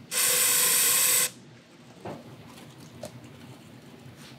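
Aerosol parts-cleaner can sprayed in one loud hiss lasting about a second onto an oil pump pickup tube and screen, washing old oil off it. A couple of faint knocks follow.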